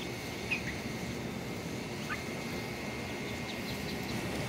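Muscovy ducklings peeping: a few short, falling high peeps about half a second in and again around two seconds, with fainter ones near the end, over a steady low background noise.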